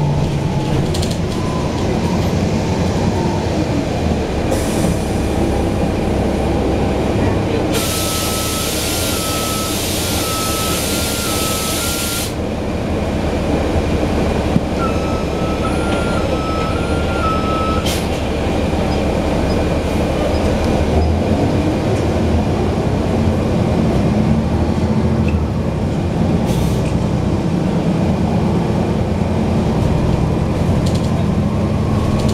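The Cummins ISL diesel engine of a NABI 416.15 transit bus running, heard from the rear seats as a steady low rumble. About eight seconds in, a loud air hiss lasts about four seconds under an alternating two-tone beep, and the two-tone beep sounds again around fifteen seconds in.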